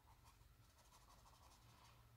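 Very faint rubbing and scratching of a Tris Mega Hidrocolor felt-tip marker being stroked over paper, above a low steady hum; near silence overall.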